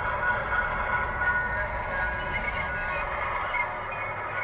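Several Lemax animated pirate village pieces playing their recorded sound effects at once through small built-in speakers. The result is a dense jumble of wavering, overlapping tones.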